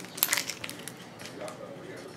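A few light crackles and rustles of paper or plastic packaging being handled in the first half-second, then faint room hiss.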